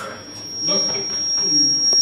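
A steady, high-pitched whistle of microphone feedback from the stage PA system, holding one pitch over men talking.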